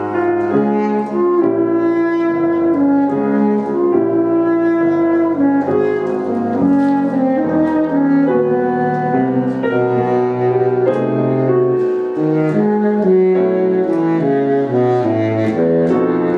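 Baritone saxophone playing a melody of linked, changing notes, accompanied by a grand piano.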